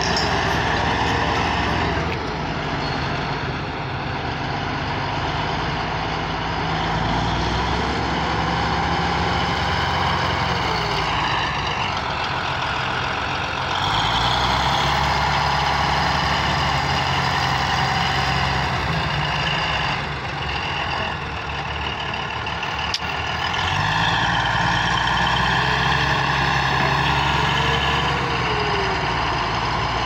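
Diesel engine of a large crawler bulldozer running under load while pushing rock and soil. Its note drops about two seconds in and climbs again twice as it takes up the load, with black exhaust smoke showing it working hard.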